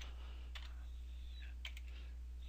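A few faint clicks of a computer keyboard and mouse, irregularly spaced, over a steady low electrical hum.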